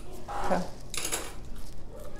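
Mouth sounds of a woman biting a piece of Carolina Reaper pepper off a spoon and starting to chew: a short vocal murmur, then a brief hiss about a second in.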